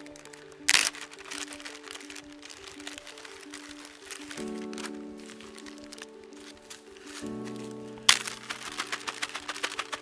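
Background music of held chords that change twice, over the crinkling and crackling of a plastic zip-top bag and a foil packet being handled. There is a sharp crackle about a second in and a loud burst of crinkling about eight seconds in.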